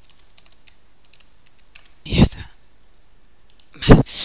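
Computer keyboard and mouse clicks during a web login, light scattered key clicks. Two brief, much louder sounds come about two seconds in and again at the very end.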